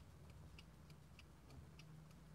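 Herweg twin-bell alarm clock ticking very lightly, faint and steady, about three ticks a second.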